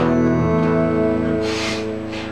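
Electric guitar chord strummed once and left to ring, slowly fading. A short hiss sounds over it near the end.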